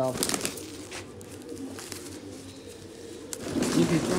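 Domestic pigeons cooing, with a short rustling clatter at the start as a bird is handled.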